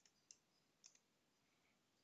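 Near silence, with two faint computer keyboard key clicks, about a third of a second and nearly a second in.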